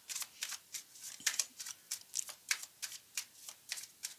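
Deck of tarot cards being shuffled in the hands: a quick, uneven run of soft card snaps and flicks, about five or six a second.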